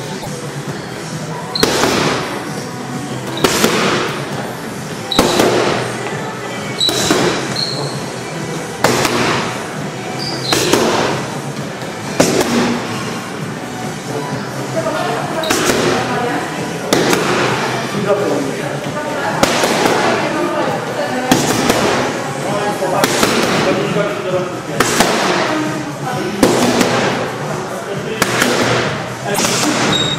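Punches landing on a trainer's boxing pads: sharp smacks about every one and a half to two seconds, some in quick pairs.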